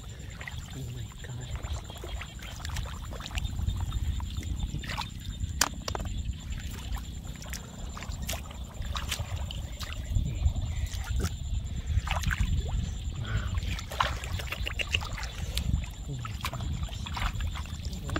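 Shallow water sloshing and splashing as hands dig and scoop through soft mud, with scattered short clicks and splats over a steady low rumble.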